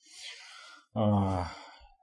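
A man takes an audible breath in, then makes a short drawn-out hesitation sound, a low "uh".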